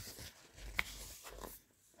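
Faint rustling of a picture book's pages being handled, with one brief high click a little under a second in.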